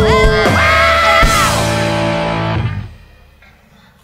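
A rock band with electric guitar, drums and flute ends a song: a note slides up about half a second in, the last chord is held, and the music stops about three seconds in.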